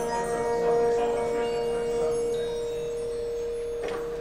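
A marching band holds one long sustained chord that slowly dies away, with chimes and mallet percussion ringing over it. A single sharp percussion hit comes near the end.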